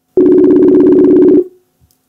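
Telephone ringback tone of an outgoing call being placed: one loud, steady, buzzing ring a little over a second long that cuts off sharply.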